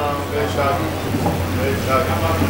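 Men's voices in short, scattered calls and responses, over a steady low hum.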